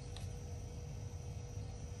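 Quiet room tone: a steady low hum with a faint high whine, and one faint click shortly after the start.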